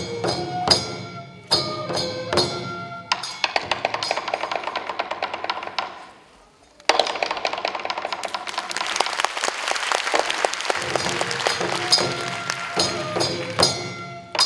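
Japanese folk-dance accompaniment for a rice-planting dance: regular percussion strokes with ringing tones. The strokes thicken into a rapid patter, drop almost to silence just before the middle, then return suddenly as a dense shimmering rattle before the steady beat picks up again near the end.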